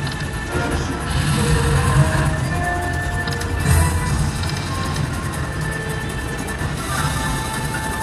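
Video slot machine playing its electronic bonus-round music and chimes as the last free game ends and a $161 win comes up, with a low rumble underneath.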